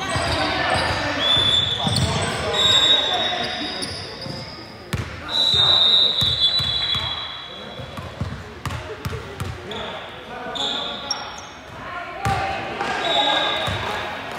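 A basketball bouncing on a hardwood court during free throws, with people chatting in a large, echoing gym. Several high, steady squeals sound over it, the loudest and longest about five seconds in.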